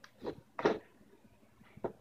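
A few short plastic clicks and knocks from a NutriBullet cup and its extractor blade base being screwed together and handled.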